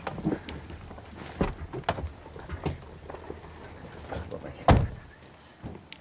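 Car door sounds of a Mercedes-Benz sedan: a few latch clicks and knocks, then one heavy door thump about three-quarters of the way through, over a low vehicle hum that fades soon after.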